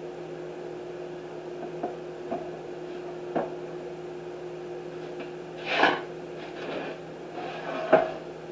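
Metal loaf pan being handled on a glass-top stove with oven mitts: a few light knocks, then a short scraping rush about six seconds in, over a steady low hum.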